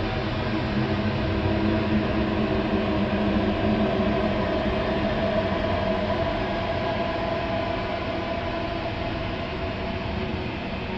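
Ambient drone music: a dense, noisy wash with several steady held tones, swelling in the first half and easing off toward the end.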